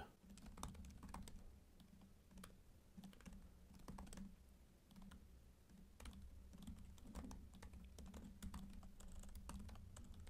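Faint typing on a computer keyboard: irregular keystrokes, with a brief pause about halfway through.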